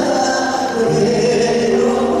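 A male vocalist singing a slow Korean song live into a microphone over a band's accompaniment, holding long notes and moving to a new note about a second in.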